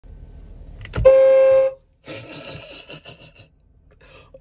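Jeep Wrangler's horn, a single steady blast lasting under a second, about a second in, heard from inside the cab.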